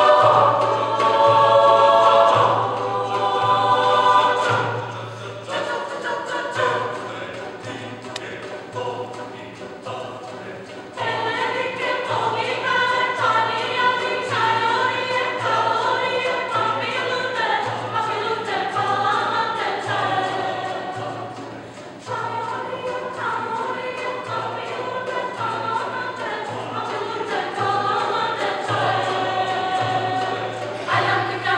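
Large mixed choir singing a Macedonian arrangement of a Romani folk song. The singing is full and loud at first, softer from about five seconds in, swells again around eleven seconds, and dips briefly near twenty-two seconds.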